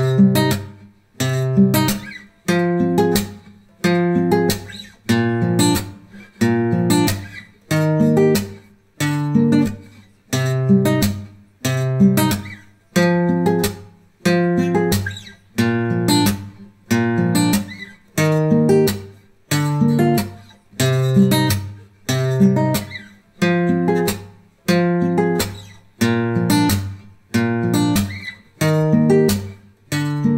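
Acoustic guitar playing an instrumental karaoke backing with no voice: chords struck at a steady pace of about one a second, each ringing out and fading before the next.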